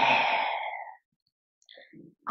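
A woman speaking Hindi into a microphone, drawing out the last syllable of a phrase until it trails off about a second in, followed by a short pause.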